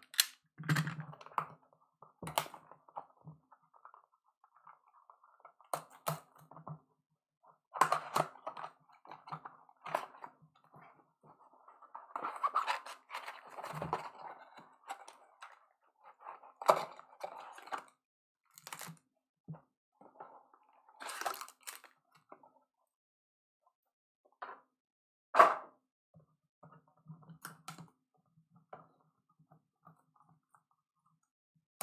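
Cardboard trading-card boxes being handled and opened by hand: scattered taps, scrapes and rustles of cardboard, with a sharp knock about 25 seconds in.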